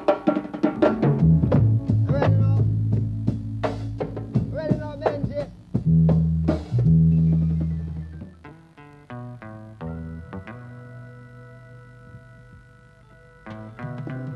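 Reggae band music: bass guitar and drums with guitar for about the first eight seconds, then thinning to softer held keyboard chords.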